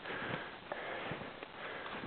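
A climber's heavy, rasping breathing on a steep snow slope, with footsteps crunching in the snow about twice a second.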